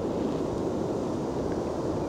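Steady wind noise on the microphone, an even low rush with no distinct events.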